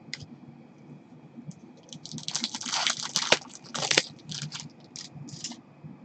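Cardboard trading cards handled and shuffled by gloved hands: a dense burst of rustling and sliding from about two to four seconds in, then lighter scrapes and clicks.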